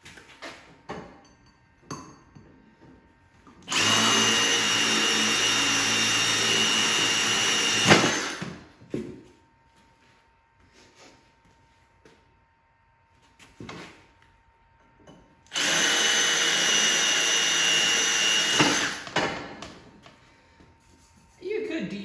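Milwaukee M18 cordless drill with a high-speed steel bit drilling through steel tubing in two steady runs of about four seconds each, with a high whine. Clatter of the drill and tubes being handled between the runs.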